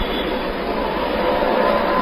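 Steady hiss and rumble of a noisy, narrow-band recording, with no distinct events.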